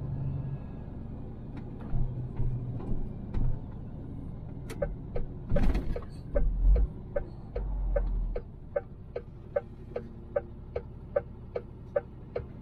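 Inside a lorry cab, the engine and road rumble run steadily while the truck drives, with a few low bumps. From about five seconds in, the turn indicator ticks regularly, two to three ticks a second, signalling the right turn into the delivery address.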